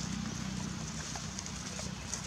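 Outdoor ambience: a steady low hum with scattered faint clicks and crackles, fitting dry leaf litter rustled by macaques moving on it.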